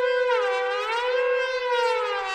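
Trombone glissandi against a steady held brass note: one line of pitch slides down about a third of a second in, climbs back by the middle, then slides down again near the end.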